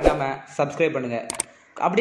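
A person's voice talking, with a sharp click at the very start and a quick double click about one and a half seconds in: the mouse-click sound effect of a subscribe-button animation.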